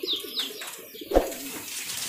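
Domestic pigeons cooing low and wavering, with two short falling chirps from a small bird at the start and a single knock about a second in.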